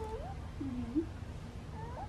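A toddler's short, wordless vocal sounds, sliding up and down in pitch, fairly faint.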